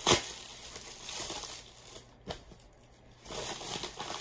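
Plastic Amazon mailer bag being torn open by hand: one sharp rip just after the start, then crinkling and rustling of the plastic, a single click partway through, a brief lull, and more rustling near the end.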